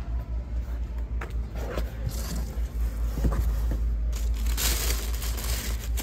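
Thin plastic plant bags rustling and crinkling as they are pulled apart inside a cardboard box, with a few light knocks of cardboard, loudest near the end, over a steady low rumble.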